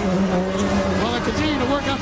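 Indy car engine holding a steady pitch in pit lane, with voices over it; the steady tone fades out about a second in.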